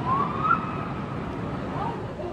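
A siren-like wailing tone that rises to a peak about half a second in and then slowly falls, over steady street noise.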